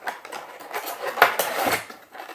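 Handling of an ice roller in its plastic tray and cardboard packaging: rustling and clicking, with one sharp click a little past a second in.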